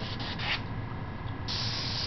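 Airbrush spraying paint, a hiss of compressed air: short bursts in the first half second, then a steadier, louder spray starting about one and a half seconds in.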